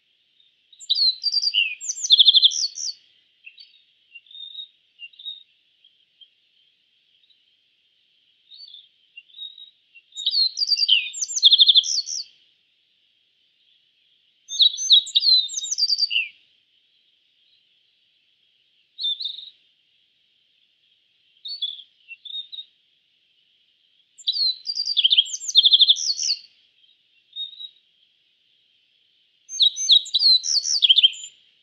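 A bunting singing: five loud, quick phrases of high chirping notes, each about two seconds long and spaced at uneven gaps, with a few short, softer notes between them. A faint, steady high hiss runs underneath.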